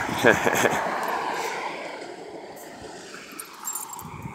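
A car passing on the road, its tyre and engine noise fading away over the first couple of seconds.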